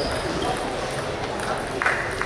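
Table tennis ball being struck with bats and bouncing on the table: a sharp click at the start, a few lighter ticks, then a louder knock with a short ring near the end as the rally finishes, in a large hall.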